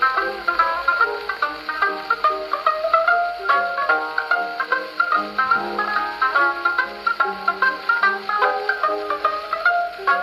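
Banjo solo played back from a 78 rpm shellac disc on an HMV Model 145 gramophone: a fast run of quick plucked notes with a thin, narrow sound and a faint surface hiss, typical of an early acoustic recording heard through a gramophone soundbox.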